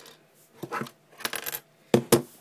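A small key clattering onto a tabletop in a quick run of light clicks about two-thirds in, among scattered sharper clicks of a plastic camera battery-compartment door being handled; the loudest click comes at the very end.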